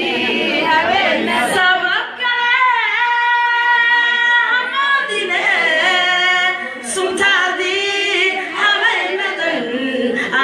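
A group of voices singing together, with a long held, wavering note about three seconds in.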